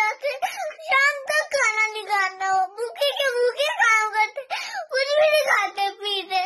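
A young girl crying as she talks, in a high-pitched, tearful voice with drawn-out phrases and short breaks between them.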